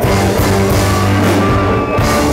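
Live country band playing loudly, with acoustic and electric guitars over a steady drum-kit beat.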